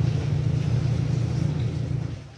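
A steady low mechanical hum, loud and continuous, that begins to fade near the end.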